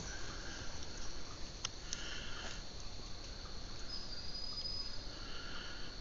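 Insects trilling steadily in summer woodland, a thin high drone, with a short higher call sounding twice, about two seconds in and near the end.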